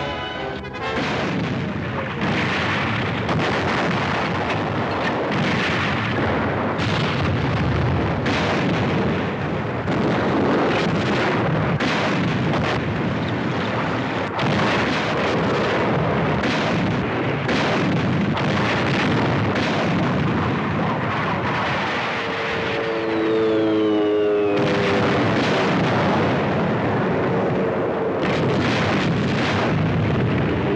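Battle sound effects of repeated explosions and artillery fire over a film score. About three-quarters through, and again near the end, a pitched whine rises over the blasts.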